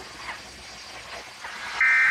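A faint hiss with a few short, thin chirps, then a loud, steady, high electronic beep-like tone comes in near the end.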